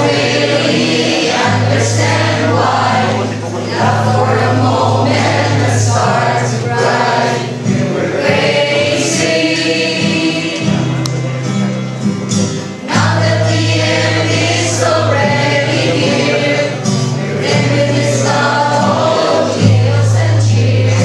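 A song sung by a group of voices in unison, over instrumental backing with a steady low bass line.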